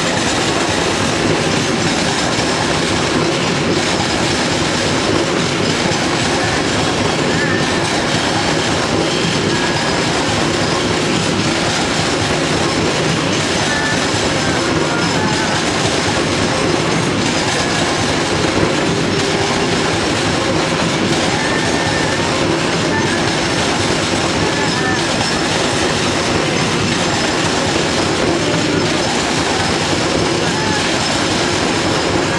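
Freight train of open-top wagons passing close by at speed: a steady, loud rumble and clatter of steel wheels on the rails that continues unbroken.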